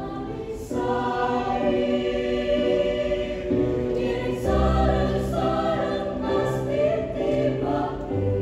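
Mixed choir singing held chords under a conductor, the sound swelling about a second in, with low bass notes joining about halfway through.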